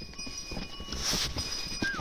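Faint, irregular hoofbeats of a horse on a stony mountain trail, with a low rumble underneath.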